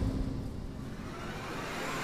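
Dramatic film sound design: the tail of a heavy hit dying away into a low rumble, then a hissing swell that starts rising about a second in.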